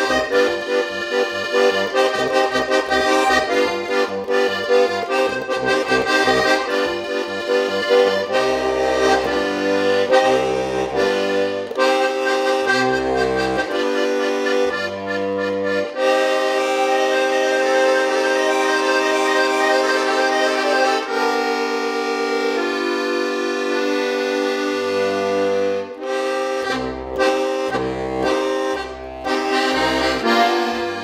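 Solo diatonic button accordion playing a lively tune. Quick melody runs over pulsing chords open the passage; from about a third of the way in, deep alternating bass notes enter under held and repeated chords.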